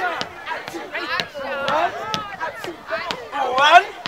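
Voices of an aerobics class calling and shouting in rising whoops, over sharp clicks that come about twice a second, with a loud call near the end.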